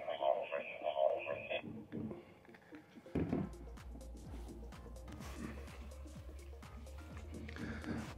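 Tinny, narrow-band audio from a handheld two-way radio's speaker for about the first second and a half. From about three seconds in, a low steady hum with light clicks and knocks as the radios are handled.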